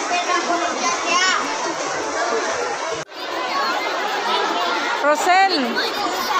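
A crowd of children chattering and calling out over one another, with a few shrill high voices standing out. The sound breaks off briefly about halfway through and the chatter resumes.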